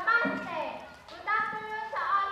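High-pitched young voices shouting and calling out among a crowd, with a drawn-out cry held for about half a second near the end.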